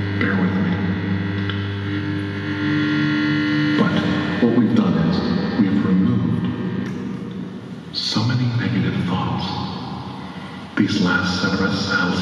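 Electric guitar played through effects: a held, distorted drone with echo for about the first four seconds, then broken, shifting sounds with a man's voice mixed in.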